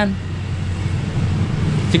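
Low, steady rumble of road traffic, without distinct knocks or rhythm.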